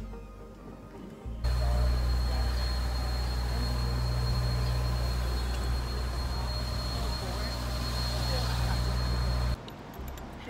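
City street noise picked up by a phone while walking: a steady low rumble of traffic with a faint, constant high whine. It starts about a second and a half in and cuts off suddenly just before the end.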